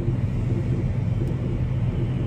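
A passenger train running past at speed, its rumble over the steady low hum of an idling tractor engine.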